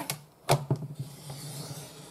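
Paper trimmer's cutting head clicking and sliding along its rail as it cuts through thick craft card, with one sharp click about half a second in followed by a few lighter clicks and a steady scrape.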